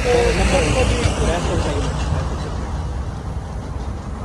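A heavy dump truck passing close by on the road: a low engine rumble with tyre and road noise, loudest near the start and fading as it moves away.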